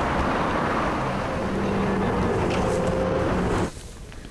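Steady outdoor street noise with a rumble of traffic, cutting off suddenly near the end.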